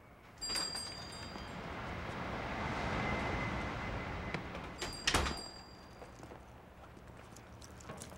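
A shop's glass front door opens with a click and a brief high metallic ring, and street traffic noise swells through the open doorway. About five seconds in the door shuts with a clunk and another short ring, and the street noise drops away.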